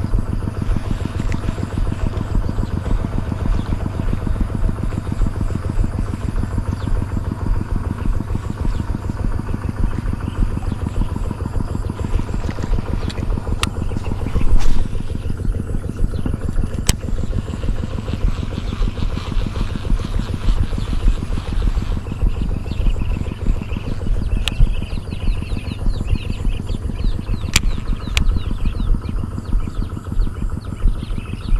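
A small engine running steadily with an even, fast pulse, with a few sharp clicks and one brief louder rush about halfway through.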